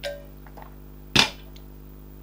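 A one-litre stainless-steel vacuum mug being put down on a hard surface: a short click right at the start, then one loud, sharp knock about a second in.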